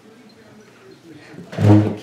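A brief, loud burst of a woman's voice, a short laugh-like exclamation, about one and a half seconds in, after faint room sound.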